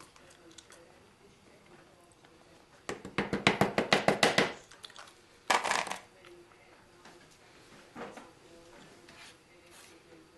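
A plastic food container knocked rapidly against a metal baking sheet to shake out flour: a quick run of about a dozen sharp taps lasting a second and a half, followed by a short scraping burst about a second later.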